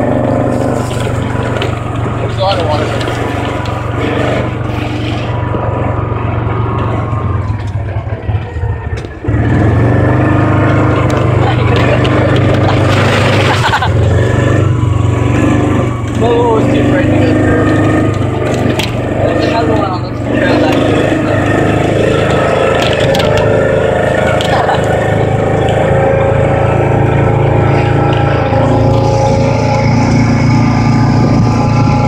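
A vehicle engine running steadily while driving over rough pasture. It drops and falters briefly about eight seconds in, then runs louder and steady from about nine seconds on.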